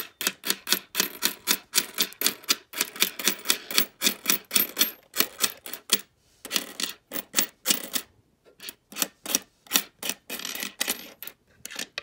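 Nickels clicking and clinking against one another and the tabletop as they are slid one at a time off a row of coins onto a pile, about three clicks a second, with short breaks about six and eight seconds in.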